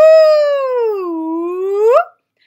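A woman's voice singing a single long ghostly "ooo" that traces the wavy line on a vocal-exploration card: it starts high, sinks lower through the middle, then sweeps sharply up at the end.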